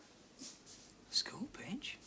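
Quiet speech: a few softly spoken, half-whispered words with hissing 's' sounds, about a second in.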